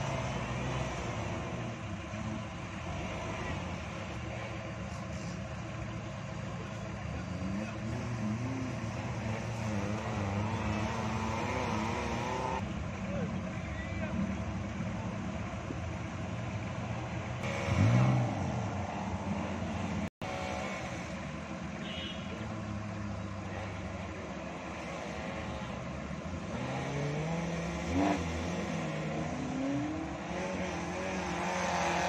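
Small four-wheel-drive Suzuki Jimny engines working on a steep dirt climb. The revs rise and fall as the drivers throttle up, with a short loud burst of revving about eighteen seconds in and another rise near the end. The sound cuts out for a moment just after twenty seconds.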